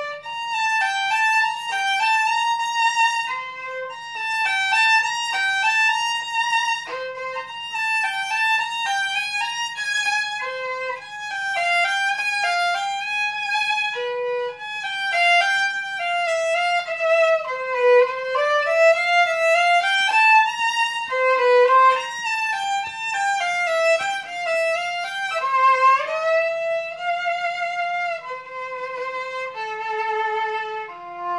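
Unaccompanied violin played with the bow: a single melodic line of held notes, with sliding, wavering pitches around the middle.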